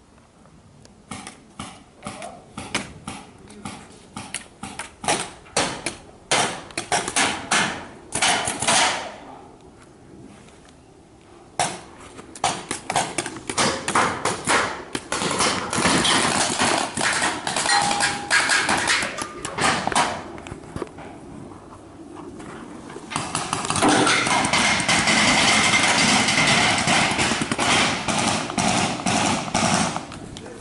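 Paintball markers firing: many sharp pops, singly and in quick strings, densest in the middle. Near the end a loud steady rushing noise takes over.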